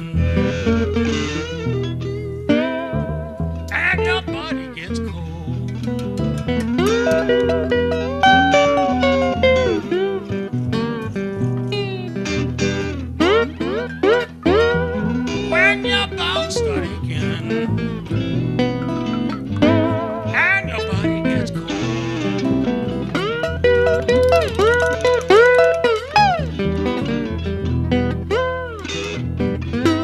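Live acoustic blues band playing an instrumental passage: guitar lines with notes that slide and bend in pitch over upright bass, resonator guitar and light percussion.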